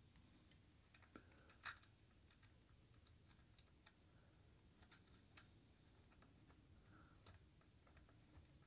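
Faint, scattered small clicks from fingers threading a hex nut onto an amplifier power toggle switch's threaded metal bushing, over near silence. The sharpest click comes about a second and a half in, another near four seconds.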